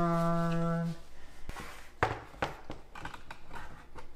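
A voice holds a sung note for about a second, then a few knocks and light scrapes as a framed photo is set against the wall and fitted on its hanger, the sharpest knock about two seconds in.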